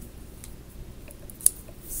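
Quiet room tone with a single sharp click about one and a half seconds in.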